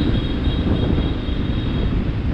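Motor scooter riding in city traffic: a steady rumble of wind on the microphone and of engine and road noise, with a faint high steady whine.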